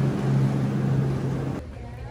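Walk-in cooler's refrigeration fans running with a steady low hum and rushing air, cutting off about one and a half seconds in to a much quieter, faint background.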